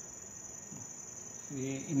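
Steady, high-pitched trill of crickets running through a pause in the talk, with a man's voice starting near the end.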